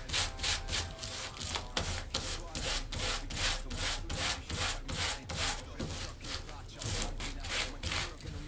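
Folded sandpaper rubbed quickly back and forth over the denim of a pair of jeans, distressing the fabric at the knee: a rhythmic scratchy rasp of about three strokes a second.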